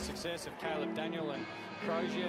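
Speech from the football broadcast's commentary, a voice talking over background music with steady held notes.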